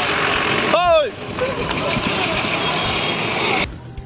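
Steady rushing road-traffic noise with a short rising-and-falling voice-like call about a second in. The noise cuts off suddenly near the end.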